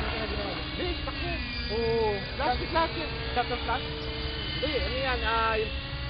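Hirobo Sceadu radio-controlled helicopter flying overhead, its engine and rotor giving a steady high whine that dips and recovers in pitch as it manoeuvres. Voices call out briefly twice, over wind rumble on the microphone.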